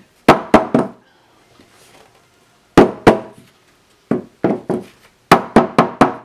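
Sharp wooden knocks in quick clusters: three, then two, then a run of about seven. A hardboard clipboard is tilted and knocked against the tabletop to make the wet ink drip and run.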